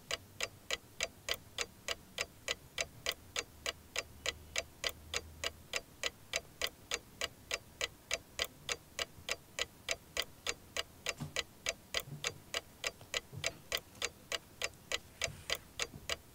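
Quiz-show countdown clock sound effect ticking steadily, about three ticks a second, marking the time allowed to answer.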